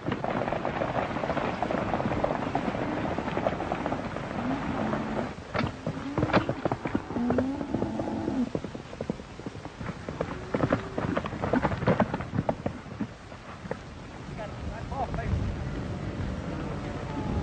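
A herd of steers being driven by riders: a dense patter of hoofbeats over a noisy rush, with several drawn-out cattle bawls in the middle.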